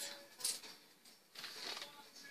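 Faint rustle of a cardboard LP record jacket being turned over in hand, a short burst about half a second in, then a softer, longer rustle near the end.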